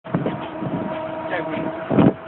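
Bus cabin noise: the vehicle running with a steady whine, with voices talking in the background and a brief louder knock right at the end.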